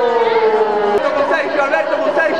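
A voice holding one long drawn-out call that slowly falls in pitch and breaks off about a second in, followed by overlapping chatter.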